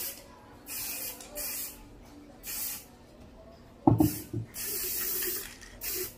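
Aerosol can of clear top coat spraying onto a terracotta vase in short hissing bursts about a second apart, with one longer spray of about a second near the end. A couple of loud knocks about four seconds in.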